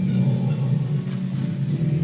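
Steady low rumble, with no speech over it.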